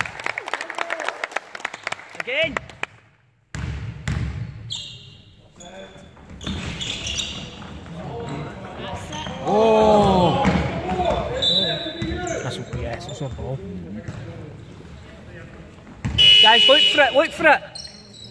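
Basketball game in a large sports hall: the ball bouncing on the wooden floor, short high shoe squeaks, and shouts from players and spectators, loudest about ten seconds in and near the end.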